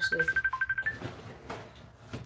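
Smartphone ringtone for an incoming Messenger call: a rapid, trilling electronic beep lasting about a second that steps up in pitch at the end.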